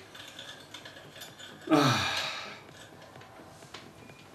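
A man sniffing shisha tobacco held in a small plastic tin. About two seconds in there is a short breathy sound with a voiced tone that falls in pitch, and faint clicks come from the tin being handled.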